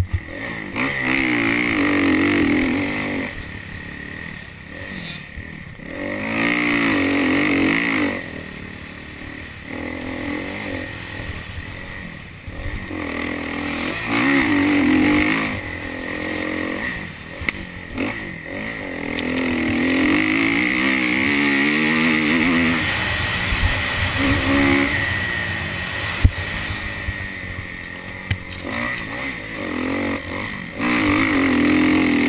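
Motocross bike engine revving hard in repeated surges of a few seconds each, climbing in pitch and then backing off as the throttle is opened and closed through corners and jumps. Wind and track noise run underneath.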